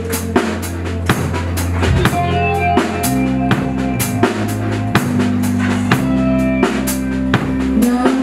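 Live rock band playing an instrumental passage: a drum kit keeps a steady beat with kick and snare hits over electric bass notes and a Fender Telecaster electric guitar playing chords.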